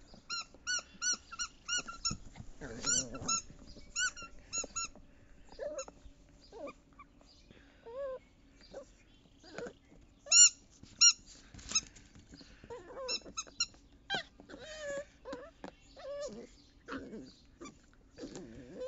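A puppy chewing and tugging at a rubber bone toy, with bursts of short high squeaks, several a second, loudest a little past the middle. Low growls and grunts come between the bursts.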